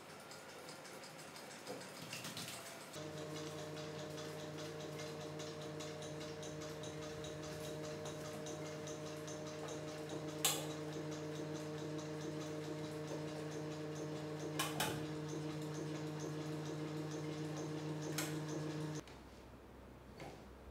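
Hand-spun flywheel rig with spring-loaded crank and belt-driven DC generator running: a steady hum with fast, regular ticking, starting about three seconds in after a few handling clicks and cutting off abruptly a second before the end. Sharp clicks stand out about ten and fifteen seconds in as bulbs are set into their holders.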